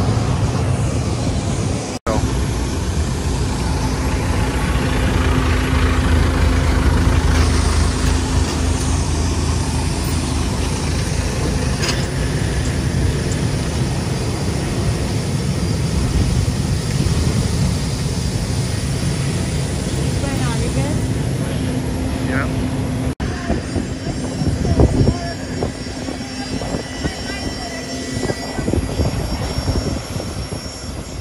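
Britten-Norman Islander's twin piston engines and propellers running at low power on the ground, a steady drone with a held hum, heard from inside the cabin. The sound breaks off briefly twice, and in the last few seconds it turns rougher and more rattly.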